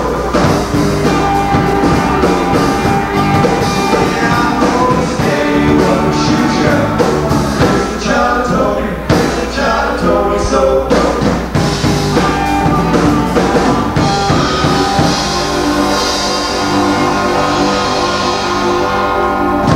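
Live rock band playing: electric guitar, bass and drum kit, loud and steady throughout.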